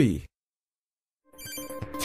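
A spoken word cut off at the start, then a second of silence, then an electronic background track of steady beeping tones over quick pulses fading in near the end.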